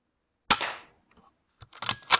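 Weihrauch HW100 .22 pre-charged air rifle firing: one sharp crack about half a second in, dying away quickly. Near the end comes a quick run of mechanical clicks and clatter.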